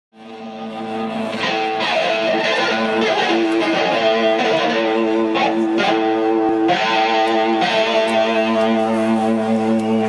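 Electric guitar playing slow, held chords on its own, changing chord every second or so, as the intro to a live rock song. The sound fades in from silence over the first second.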